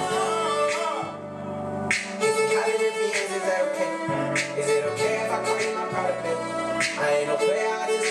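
Electric violin playing a bowed melody over a hip-hop backing track with a regular drum beat and bass. The beat drops out briefly about a second in, then comes back.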